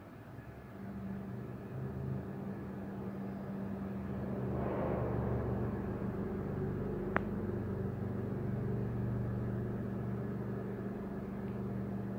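A low, steady mechanical hum that builds over the first few seconds and swells around the middle, with a single sharp click about seven seconds in.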